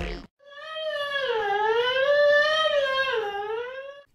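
Electronic intro music cuts off just after the start. Then a single long, high, wavering wail, like a voice, holds for about three and a half seconds, its pitch dipping and rising slowly without a break.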